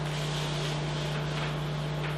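Room tone: a steady low hum under an even hiss, with no distinct events.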